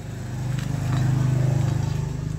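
A motor vehicle engine running nearby: a low, steady, pulsing hum that grows louder through the first second and eases slightly near the end.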